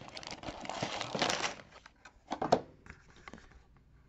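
Plastic LEGO parts bags crinkling and a cardboard box rustling as the box is emptied, dense for the first second and a half, then a few sharp knocks about two and a half seconds in as things are set down.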